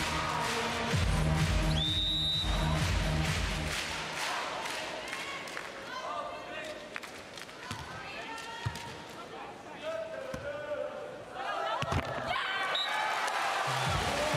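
Arena music with a heavy beat fades out about four seconds in, with a short high whistle about two seconds in. Then come crowd voices and several sharp hits of hands on a beach volleyball as the serve is received and the rally is played.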